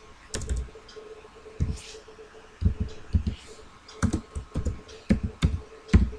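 Computer keyboard being typed on: a slow, uneven run of about a dozen separate key presses.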